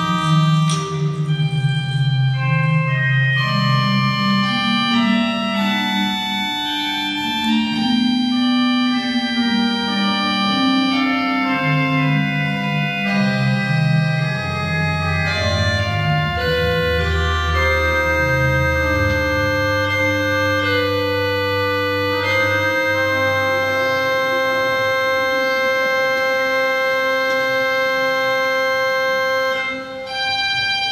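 Church organ playing slow, sustained chords. Deep bass notes come in about halfway through, and it settles on a long held chord in the last third.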